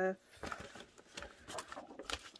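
A drawn-out spoken syllable trails off, then faint rustling and small taps as paper is handled on a paper trimmer.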